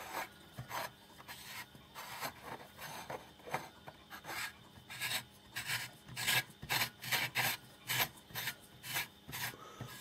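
A screw-base light bulb being twisted into a tight lampholder, its threads scraping and grinding in short strokes despite a little oil. The strokes are sparse at first and come faster and louder from about halfway.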